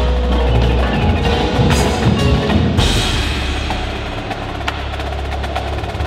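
An indoor percussion ensemble playing: drums, cymbals and mallet keyboards such as marimba and vibraphone over a low sustained bass. It eases off slightly about four seconds in.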